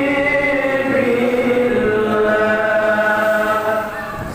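A voice chanting a sholawat, a devotional Islamic praise song for the Prophet Muhammad, in long drawn-out notes: a held note that slides down a little before a second, lower note is held to the end.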